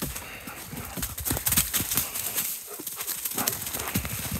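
Dogs running over dry fallen leaves, their paws crunching the leaf litter in quick, irregular strides, loudest about a second and a half in.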